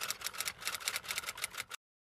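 Typewriter key-clicking sound effect accompanying text being typed on screen: a fast run of sharp clicks, about a dozen a second, that stops suddenly near the end.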